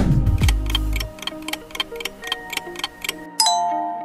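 Quiz countdown sound effect: a clock ticking about four times a second over background music, whose bass drops out about a second in. Near the end a bright chime rings out as the answer is revealed.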